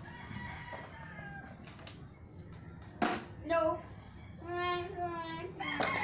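A plastic water bottle tossed in a bottle flip lands on a tiled floor with one sharp clatter about halfway through. A rooster crows in the moments after.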